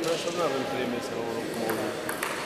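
Indistinct voices of people talking in a sports hall between announcements, with a light click near the end.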